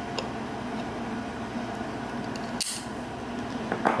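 Steady room noise with faint handling sounds of folding knives being moved: a light click just after the start and a brief brushing sound about two and a half seconds in.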